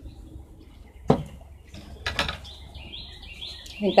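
Scissors snipping tulle: two short cuts about a second apart. Birds chirp faintly in the background.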